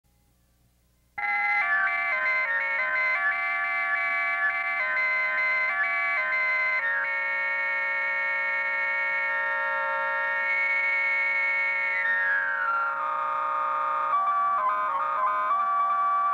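Moog synthesizer starting about a second in with a fast stepping run of notes from its sequencer, then a long held note that slides down in pitch, then quick stepping notes again.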